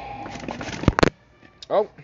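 A rustle of handling, then two sharp knocks close together about a second in as the phone propped on the store shelf falls over, followed by a man's brief "oh".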